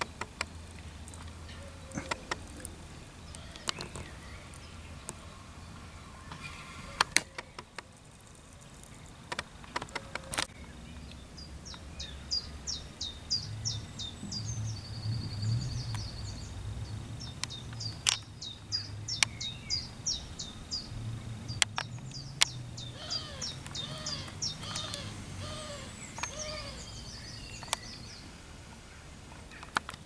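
A songbird singing twice, each song a quick run of high notes ending in a short trill, in the middle and again near the end. Scattered sharp clicks and a low rumble lie under it.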